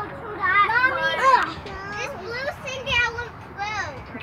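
Young children's high-pitched voices chattering and calling out in several short phrases, with no clear words.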